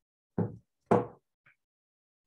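Two loud knocks about half a second apart, each dying away quickly, followed by a faint tap.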